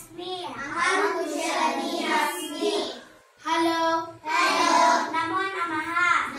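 A class of children reciting Sanskrit phrases together in a sing-song chant, with a short pause about three seconds in.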